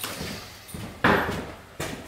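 A sudden bang about a second in that fades over about half a second, then a softer knock near the end.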